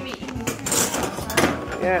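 Voices in the background, with knocks and clatter of plastic tubs and a spoon on a wooden table. A short burst of speech comes near the end.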